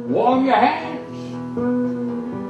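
Live guitar accompaniment with a steady held note, and a voice rising and falling briefly in the first second.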